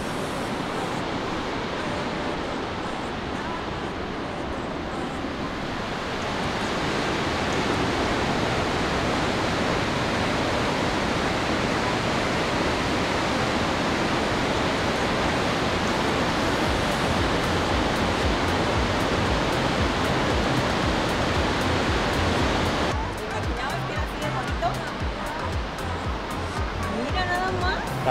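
Burney Falls waterfall rushing in a steady, even roar that grows louder about six seconds in. Near the end the roar drops back and background music with a beat comes through.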